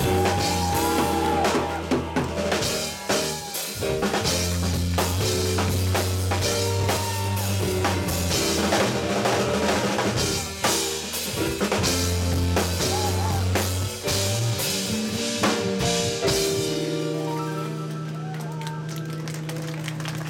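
Live band playing an instrumental passage: drum kit with bass drum and snare under a driving bass guitar line, with saxophone. About three-quarters of the way through the drums drop out and a held low chord rings on, a little quieter.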